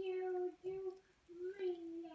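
A young child's voice singing in held notes: two short steady notes, then a longer one that rises and falls away.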